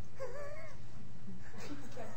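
A short, high-pitched, wavering vocal sound lasting about half a second, followed near the end by faint speech.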